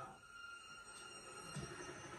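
Faint, steady high-pitched tones held at several pitches, with a soft low hum coming in past the middle.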